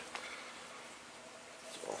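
Faint steady background hiss with no distinct sounds in it.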